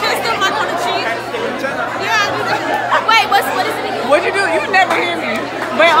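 Crowd of students chattering in a large school cafeteria, many voices overlapping at once.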